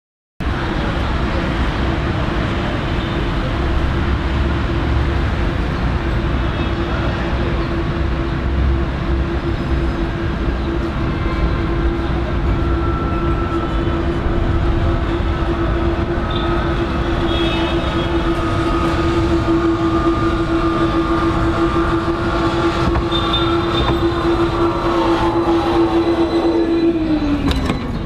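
Electric tram on the Ramleh line running with a steady whine over a rumble, the whine falling in pitch near the end as the tram passes close.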